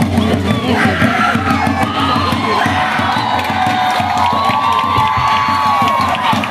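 Fast, steady drumming accompanying a war dance, with shouted cries and crowd cheering over it; one long drawn-out cry from about four seconds in until near the end.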